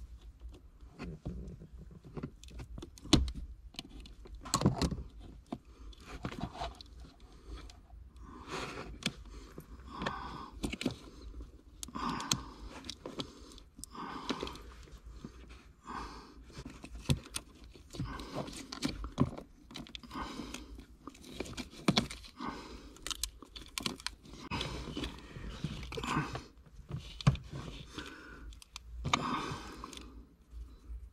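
Hands handling car wiring and its plastic loom tubing: irregular rustling and scraping with many small clicks, coming every second or two.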